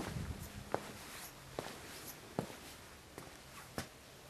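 Footsteps of a person walking at an even pace, about one step every 0.8 seconds.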